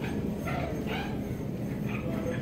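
Supermarket checkout-area background, steady and busy, with three short, sharp yelps about half a second, one second and nearly two seconds in.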